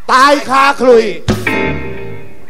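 A man's voice over a stage PA in three loud phrases, then, about a second and a half in, a sharp hit from the live band followed by a held chord that rings on.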